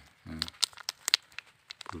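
A small plastic sachet of tablets crinkling as fingers squeeze and turn it, a scatter of short sharp crackles from about half a second in.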